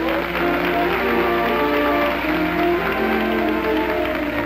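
A band playing music, with audience applause over it.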